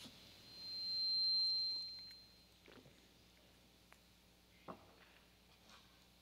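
A single high, steady ringing tone of microphone feedback that swells up and dies away over about two seconds, then a few faint knocks and clicks of handling near the microphone stand.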